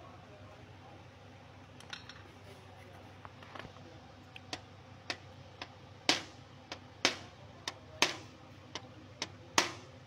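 Small hammer tapping the metal crimp tabs of a car radiator's header down over its plastic tank, re-closing the seam on fresh sealant. A few light taps at first, then a run of sharp metallic strikes about two a second from about halfway, some much louder than others.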